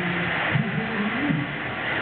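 Amusement park din: a steady wash of crowd and ride noise, with a voice calling out briefly in the middle.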